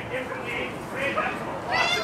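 Girls' voices talking low, then a loud, high-pitched squealing laugh near the end.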